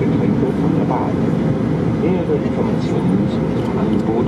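Steady cabin noise inside an Airbus A319 during its climb-out: the deep, even rush of the engines and airflow heard through the fuselage. A faint public-address voice sits over it.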